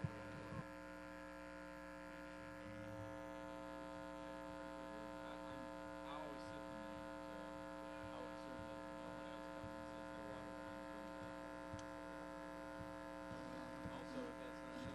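Steady electrical mains hum from the sound system, a stack of unchanging tones, with faint chatter of people greeting one another far in the background.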